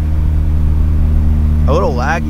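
Turbocharged Ford Focus ST four-cylinder engine heard from inside the cabin, cruising with a steady drone that holds one pitch, with road noise underneath.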